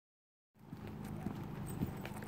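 Footsteps on a paved road at walking pace, about two steps a second, over a low steady hum. The sound starts about half a second in.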